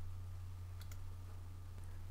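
Computer mouse clicking once to uncheck a software checkbox, heard as a faint quick pair of ticks about a second in, over a steady low electrical hum.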